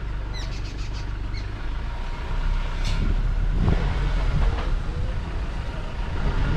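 A bird calling with quick, repeated down-slurred chirps that fade out in the first second and a half. After that a low, uneven rumble grows louder, with a single click about three seconds in.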